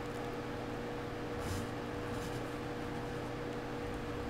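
A low, steady hum holding a faint constant tone. Faint brief whirring noises come about one and a half and two seconds in.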